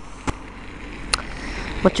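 Low, steady outdoor background noise with two brief sharp clicks, then a man's voice starting near the end.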